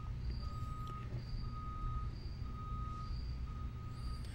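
A faint electronic beep repeating about once a second, each beep lasting about half a second, over a low steady hum.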